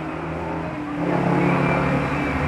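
Street traffic: a vehicle engine running, a steady low hum that swells about a second in.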